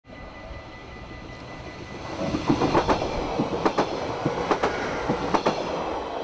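A train passing over a level crossing. Its rumble rises about two seconds in, and its wheels give sharp clacks in pairs, roughly one pair a second, as they run over the rail welds. The residents blame this banging on faulty welds at the crossing.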